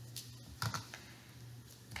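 A few soft clicks and taps from a glue stick and paper slips being handled on a tabletop, with a steady low hum underneath.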